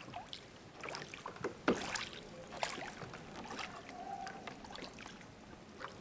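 Gondola oar stroking through canal water: irregular small splashes, drips and gurgles of water off the blade, the loudest splash about two seconds in.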